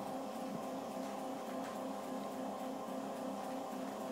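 A steady droning hum with several fixed tones.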